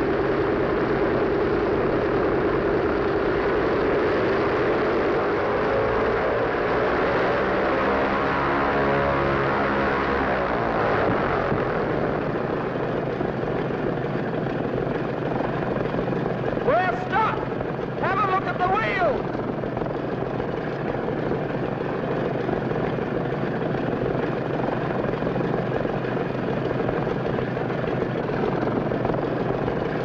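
Piston engines of a twin-engine propeller transport plane running loud at high power. The note wavers and sweeps for several seconds, then settles into a steady drone. The heavily loaded plane is bogged in soft ground and cannot get moving.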